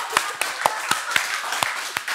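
Hands clapping in a steady, even rhythm, about four claps a second.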